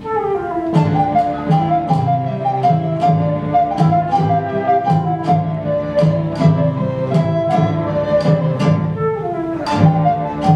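Live instrumental music from a small acoustic ensemble: a flute melody over guitar and a low, pulsing bass line, with sharp strikes marking a steady beat about twice a second. The music comes in strongly at the very start after a quiet moment.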